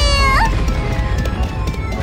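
A cartoon kitten character's crying wail, falling in pitch and ending with a short upward catch just under half a second in, over background music.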